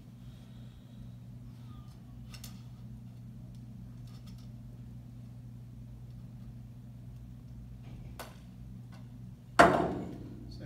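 Faint small clicks and handling noises as the insect net's metal hoop rod is worked into the holes in the handle, over a steady low hum. Near the end comes one sharp, loud knock.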